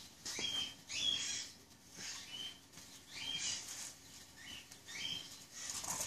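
A small bird chirping repeatedly, short high chirps about once a second, over a faint steady hum.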